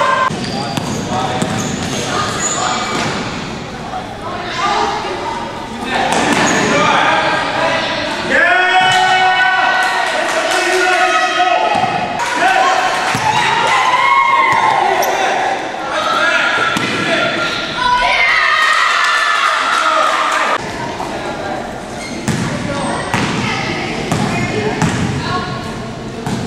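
A basketball bouncing on a hardwood gym floor during play, with players and spectators shouting and talking. The sound echoes around a large hall.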